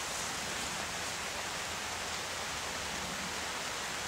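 A steady, even hiss with no distinct events or changes.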